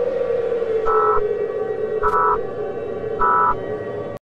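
A siren winding down, its single tone falling slowly in pitch. Over it come three short buzzy data bursts about a second apart, in the pattern of an EAS end-of-message code.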